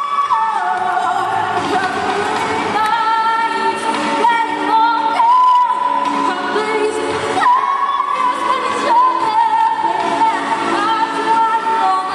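A teenage girl singing long held notes into a handheld microphone, over instrumental accompaniment.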